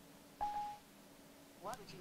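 Siri's short electronic prompt tone on an iPad Mini: a single clear beep about half a second in, the signal that Siri is listening for the search words. A brief spoken word follows near the end.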